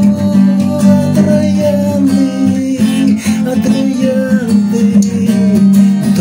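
Acoustic guitar strummed in a steady rhythm, with a gliding melody line above it in a break between sung lines of a song.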